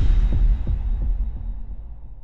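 Deep bass impact from an intro sound effect, followed by a few throbbing low thuds, heartbeat-like, that fade away.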